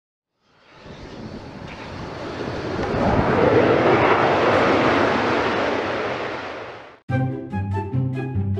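A jet airplane passing by: a rush of noise swells for about three seconds, then fades away. About seven seconds in it cuts off and music starts abruptly.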